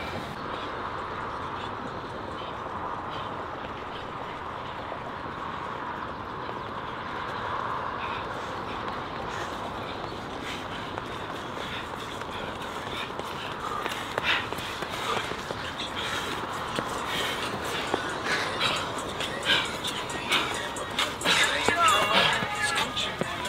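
Steady outdoor hiss, then from about two-thirds of the way in, quick running footfalls on a dirt trail as runners sprint uphill, growing louder as they come closer.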